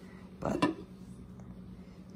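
Glass lid lifted off a ceramic slow cooker, clinking briefly against the crock twice about half a second in.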